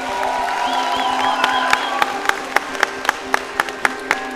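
Audience applauding and cheering over held music tones; from about a second and a half in, sharp claps or beats come evenly, about four a second.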